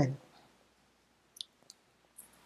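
Near silence after a spoken word ends, with two faint clicks close together about a second and a half in, from tarot cards being handled.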